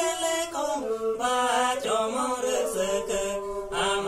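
Two men singing a traditional folk song together, accompanied by two banams, bowed wooden folk fiddles whose sustained tones run under the voices.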